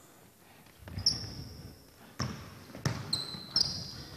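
A basketball bouncing on a hardwood court, about four bounces at uneven spacing, with short high squeaks of basketball shoes on the floor near the start and again near the end.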